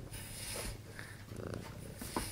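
A pet rubbing its face against the camera lens close up: faint, soft rubbing and brushing noises.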